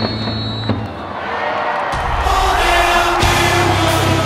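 Background music laid over the footage, its bass dropping out for about a second shortly after the start and then coming back in.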